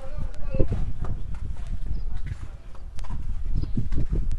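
Footsteps of a person walking, under a low rumble, with faint voices in the background.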